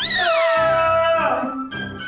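A comic sound effect: a high whistle-like glide that starts suddenly and falls steadily in pitch over about a second, over background music with a steady low beat.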